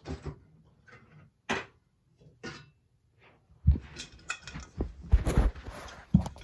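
Handling noise: a series of irregular knocks, bumps and rustles as a phone camera is picked up and moved about, growing busier in the second half.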